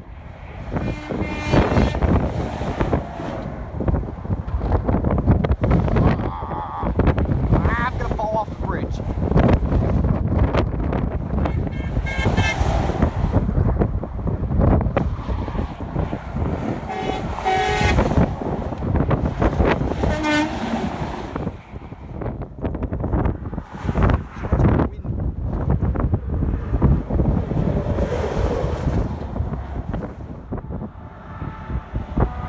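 Semi-truck air horns blowing in several separate blasts over the steady noise of highway traffic, with wind on the microphone.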